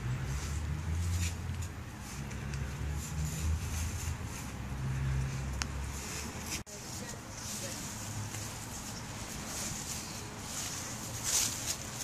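Footsteps rustling through dry fallen leaves, with a low rumble of wind on the microphone through the first half; the sound drops out sharply a little over halfway in.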